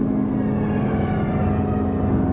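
A steady low drone: sustained tones held over a deep rumble, part of the film's soundtrack.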